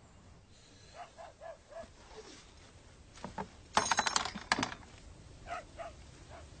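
A brief burst of metallic rattling and clinking, about a second long and about midway through, like tools being moved about in the rear of a four-wheel-drive.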